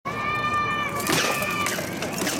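Steel weapons clashing on armour and shield: a ringing metallic tone dies away, then a sharp clash about a second in sets off more ringing.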